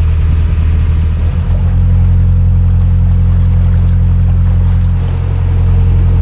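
Narrowboat engine running steadily under way, a loud, even low drone. It dips briefly about a second and a half in and again near five seconds.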